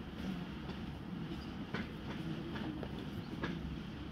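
Steady low rumble of room noise with a few faint taps between about two and three and a half seconds in, likely bare feet stepping on judo tatami mats.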